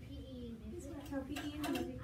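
Several children's voices talking over one another, with a few light knocks about a second and a half in.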